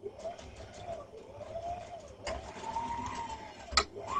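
Domestic Brother electric sewing machine stitching through elastic, its motor whine rising and falling in pitch as the foot pedal speeds it up and slows it down. Two sharp clicks, a little after two seconds in and again near the end.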